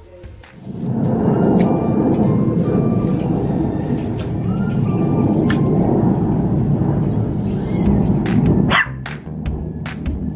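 A small dog barking and yelping, under a loud steady rushing noise that cuts off suddenly near the end; a rising yelp and a few sharp barks follow.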